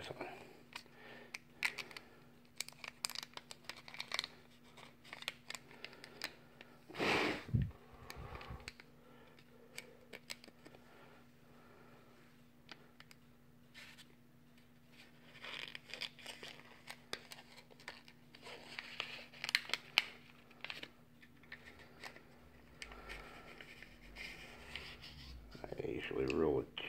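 Clear plastic heat-shrink battery wrap being worked by hand over an 18650 cell: faint crinkling and small scattered clicks, with one louder knock about seven seconds in.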